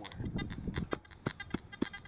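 Hand digging tool working into lawn sod and soil: a rough scraping and rustling first, then about five short, sharp knocks as the blade chops in.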